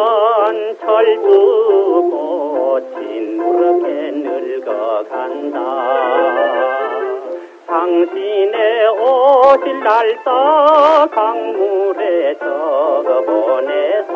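A male singer with a strong, wavering vibrato over band accompaniment, in an early-1960s Korean popular song (trot) played from an old record.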